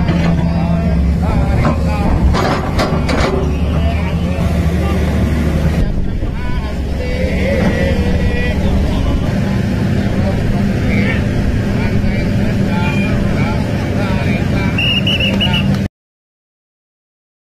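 An excavator's diesel engine running steadily close by, a constant low drone under indistinct voices. The sound cuts off abruptly near the end.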